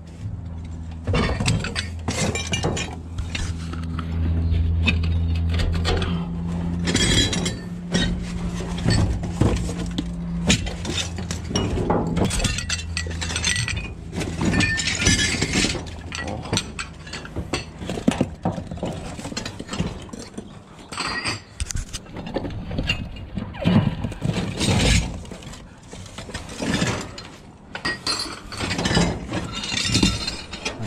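Ceramic plates and broken crockery clinking and clattering as they are picked up and shifted about in a metal dumpster, in many separate knocks and chinks. A steady low hum runs underneath at first and stops about ten seconds in.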